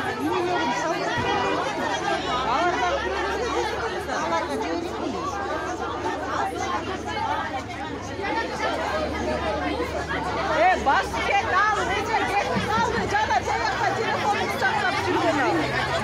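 Crowd of many people, mostly women, talking and shouting over one another in an agitated uproar, busiest in the second half.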